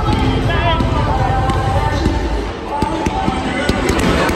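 Crowd noise in a cricket stadium, with background voices and a few sharp knocks or claps.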